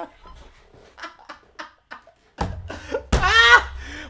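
A man laughing: soft breathy bursts of laughter, then a louder voiced laugh about three seconds in, over a low rumble that starts shortly before it.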